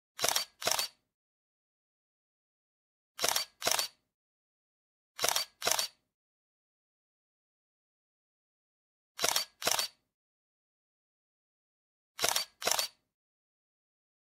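Sound effect of short, sharp double clicks, heard five times at uneven intervals, with dead silence between the pairs.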